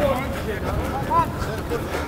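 Indistinct shouted calls from voices across a rugby pitch, short and broken, over a low rumble of wind on the microphone.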